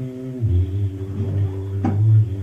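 A low voice chanting a mantra in long held notes, the pitch stepping down about half a second in, with a short sharp sound near the end.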